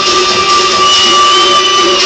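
Electronic dance music in a club, in a breakdown: two held high synth tones over a loud noisy wash, with the bass and beat dropped out.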